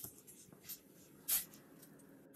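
A steel ladle scraping a few times in a steel pan of boiling sugar syrup as the syrup is stirred and checked for a small string; three faint, brief scrapes.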